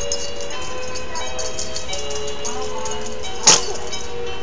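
A baby's musical crib mobile playing a simple melody of held notes, with one sharp knock near the end.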